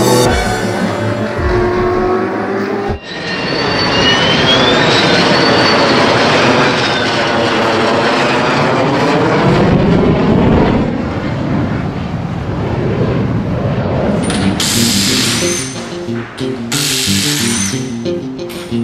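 Background music. From about three seconds in, a car passes at speed, its noise swelling and then fading over several seconds; near the end, two short hissing bursts from a power tool at a car's wheel.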